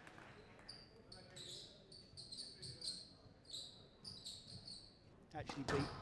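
Squash rally on a hardwood court: players' shoes give short, high squeaks on the floor several times a second, with the odd knock of the ball.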